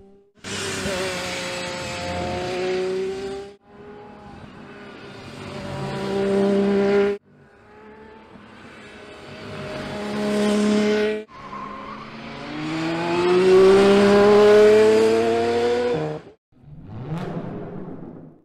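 Aston Martin Valkyrie's 6.5-litre naturally aspirated Cosworth V12 at high revs as the car accelerates on a circuit. It comes in four stretches, each rising in pitch and getting louder before being cut off suddenly. The last is the loudest.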